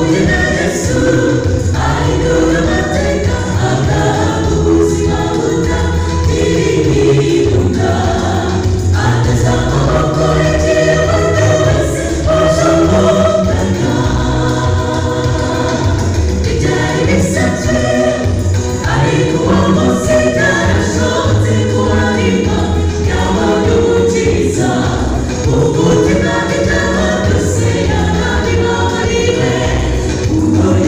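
A choir of many voices singing a gospel song together.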